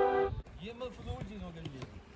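Background music that cuts off abruptly about half a second in, followed by faint voices of several people talking.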